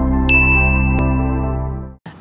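A bright bell-like notification ding that strikes about a third of a second in and rings on for over a second, over a soft, steady ambient synth music bed, with a short click about a second in. The music fades out near the end.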